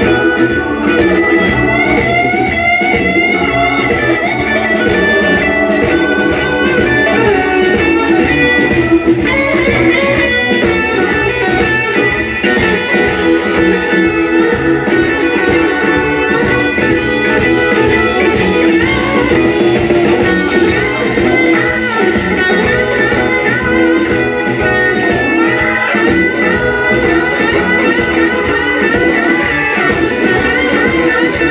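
Live electric blues band playing an instrumental passage: an electric guitar leads with bent notes over a steady drum beat and the full band.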